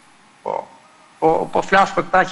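A short pause in a man's speech, broken by one brief low vocal sound about half a second in, then the man starts talking again about a second in.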